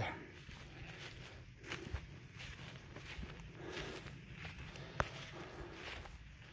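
Faint footsteps through dry, short pasture grass, with one sharp click about five seconds in.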